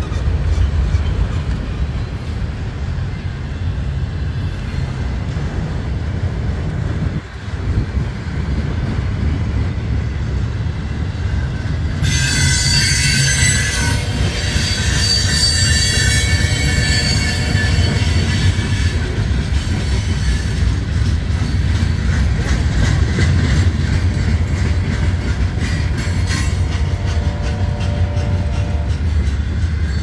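Freight cars rolling past at close range, with a steady low rumble of steel wheels on rail. From about twelve seconds in, high-pitched wheel squeal rises over the rumble for several seconds and then fades back into it.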